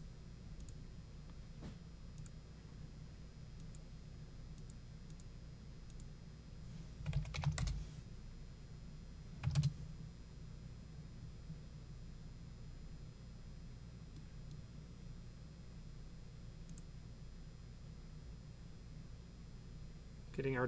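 Computer keyboard keystrokes during drafting work: a quick run of keys about seven seconds in and one sharper single click at about nine and a half seconds, over a faint low steady hum.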